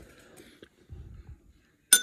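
A metal spoon clinks once against a ceramic bowl near the end, with a brief ringing. Before it there are only faint low handling sounds.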